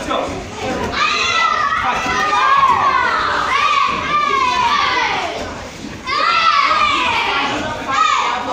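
Many children's voices shouting and calling out over one another in a large hall with a lot of echo, with long rising-and-falling cries through the first half and again around six seconds in.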